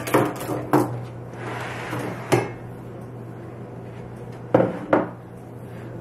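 Kitchen knives and china dishes being handled on a countertop: about five sharp clinks and knocks spread through the few seconds, with a short rustle between them.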